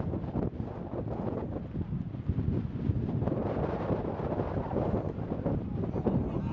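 Wind blowing on the microphone outdoors: a low, uneven rush that rises and falls without a break.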